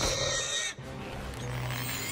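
Cartoon sound effects: a high electronic whir and hiss that cuts off less than a second in, followed by a low steady hum.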